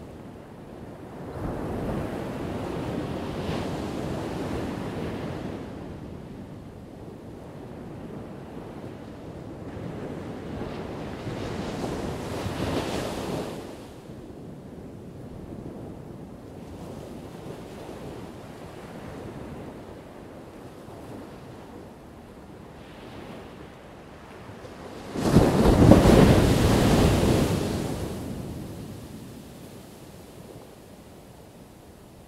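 Ocean surf, waves breaking and washing on a shore in surges: one about two seconds in, another around twelve seconds, and the loudest starting suddenly about twenty-five seconds in, then fading away.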